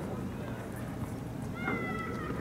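A child's high-pitched, drawn-out call near the end, falling slightly in pitch, over steady outdoor background noise, with a faint knock about a second in.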